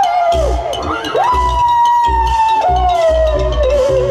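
Likay singer holding two long, drawn-out wailing notes, each swooping up and then sliding down, over a steady low drum beat from the accompanying ensemble.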